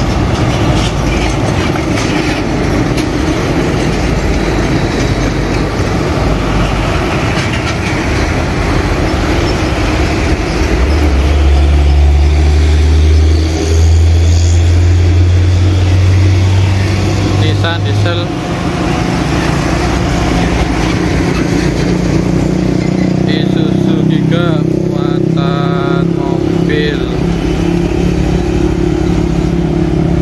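Heavy diesel trucks going by close at low speed in road traffic, engines running under a steady rumble of traffic. From about 11 to 18 seconds in, one truck's engine passes close with a loud, deep drone.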